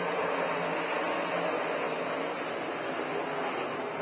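Winged dirt-track sprint cars' V8 engines running hard at racing speed as the field races, a steady, dense engine noise with no single car passing out of it.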